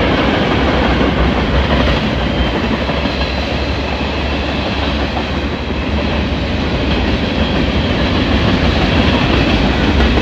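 Freight cars of a passing freight train rolling by close up, steel wheels running on the rails with a steady, loud noise.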